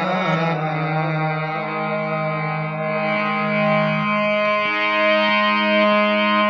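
Harmonium playing the introduction to a devotional bhajan: long held notes and chords over a low sustained note that changes pitch twice.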